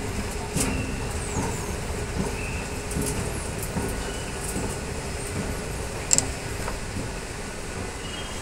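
2014 OTIS escalator running, a steady mechanical hum under a rumble of rail-station noise, with one sharp click about six seconds in.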